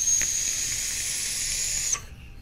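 Tactical Warhead rebuildable dripping atomizer fired at 90 watts on a 0.15-ohm coil, on a Vapor Shark DNA 200 mod: one long steady hiss of the coil heating liquid as air is drawn through it, with a thin high whistle over it. It cuts off sharply when the button is let go.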